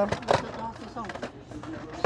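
People talking, with the rustle and light knocks of Hot Wheels cars on plastic blister cards being moved around in a cardboard display box.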